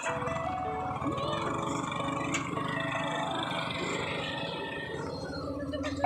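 Background music over the low, steady running noise of motorbikes and road traffic, which comes in suddenly at the start.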